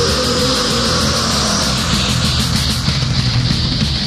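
Heavy metal band playing: distorted electric guitars and bass over drums, with fast, steady cymbal hits. A held guitar note sits above the riff through the first half.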